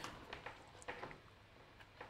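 Faint, scattered clicks and taps as the metal-cased network switch and its power cable are handled on the desk.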